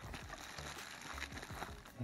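Plastic bubble wrap crinkling and crackling as it is handled and peeled off a camera lens by hand, in a run of small irregular crackles.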